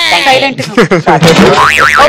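Comic sound effect: a springy boing, its pitch wobbling up and down in quick zigzags, laid in as a gag sting.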